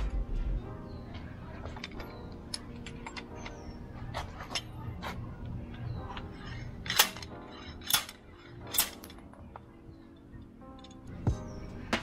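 Background music, with three sharp metal knocks about a second apart past the middle: a puller with a long bar being worked to draw a worn pilot bearing out of the end of an engine's crankshaft.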